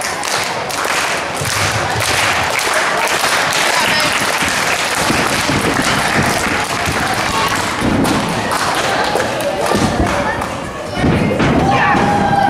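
Heavy thuds of bodies landing on a wrestling ring's mat, several of them mostly in the second half, over crowd chatter and shouts.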